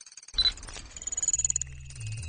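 Synthesized sci-fi interface sound effects for a loading animation: a sudden electronic hit, then a rapid stuttering digital chatter with a thin high whine. A low hum comes in near the end.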